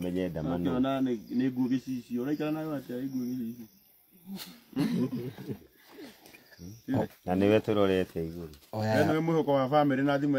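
Speech only: a voice talking in phrases, with a pause about four seconds in.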